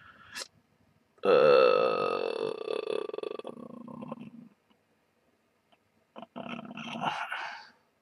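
A man's long, drawn-out, croaky "uhhh" of hesitation lasting about three seconds, followed near the end by a shorter mumble, as he works out the diodes' value.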